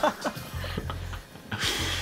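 Men laughing over a video call, with background music underneath and a short breathy hiss near the end.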